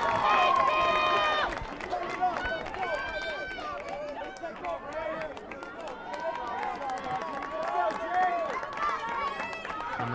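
Several high, raised voices calling out and shouting across an outdoor soccer field, loudest in the first second or so, with light crowd noise underneath.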